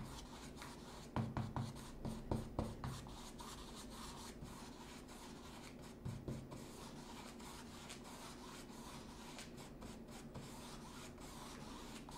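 Faint scratchy brushing of a bristle paintbrush scrubbing and blending acrylic paint across a stretched canvas. A few soft thumps come between about one and three seconds in, and one more about six seconds in.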